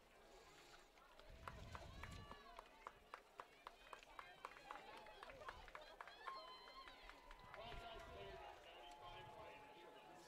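Faint football-field ambience of distant voices, with a few light clicks scattered through it.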